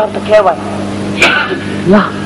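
A woman's voice singing a repeated refrain into a stage microphone, in short phrases, over a steady low hum.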